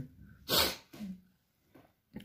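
A person's short, sharp breath noise about half a second in, followed by a brief low vocal sound.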